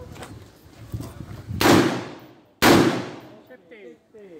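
Two rifle shots about a second apart, each loud and sharp with a short echoing tail.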